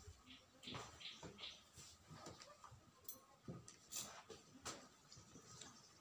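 Near silence: a few faint, irregular rustles and soft clicks.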